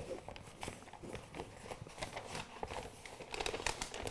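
Backing paper being peeled slowly off self-adhesive lampshade PVC, a faint irregular crackling and crinkling of the paper as the adhesive lets go.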